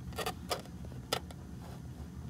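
A few short, light clicks and taps, handling noise, over a low steady hum; the sharpest click comes about a second in.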